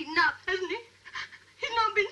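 A woman whimpering in short, high, panting gasps one after another, with a break of almost a second in the middle before the gasps start again.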